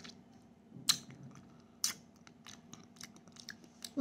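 A child eating a lemon wedge: quiet, scattered wet mouth clicks of chewing and sucking, with two sharper snaps about a second and two seconds in.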